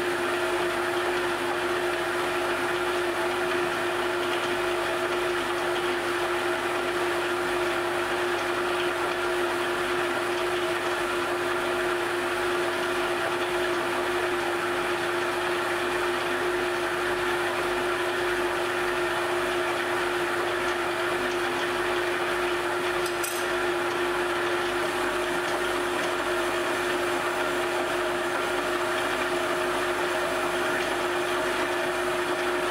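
Glass lathe running with a steady motor hum, under the even hiss of a hand-held gas torch flame heating the glass.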